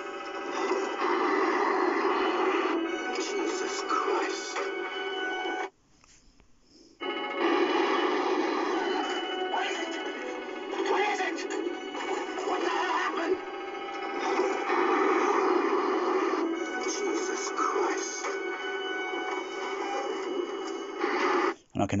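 A mono film soundtrack played loud through loudspeakers in a room, with the bass muted: cockpit dialogue over a steady background of music and noise. It drops out to near silence for about a second, about six seconds in.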